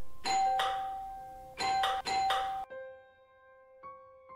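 Electric doorbell ringing, a long ring and then two short rings close together, over soft piano music.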